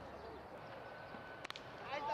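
Faint open-field ambience, then about one and a half seconds in a single sharp crack of a cricket bat striking the ball, with a faint steady tone just before it.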